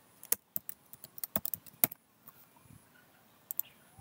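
Typing on a computer keyboard: a quick run of separate key clicks in the first two seconds, then a couple more clicks near the end.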